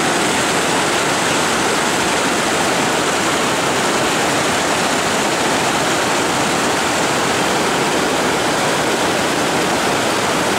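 River rapids rushing steadily between boulders: a loud, even wash of white water.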